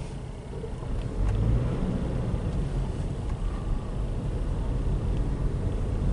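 A car's engine and road noise heard from inside the cabin while driving, a low steady rumble that grows a little louder about a second in.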